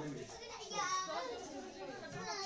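Several people talking in the background, children's voices among them.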